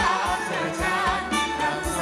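Live band playing Thai ramwong dance music, with a singer's voice over a steady drum beat.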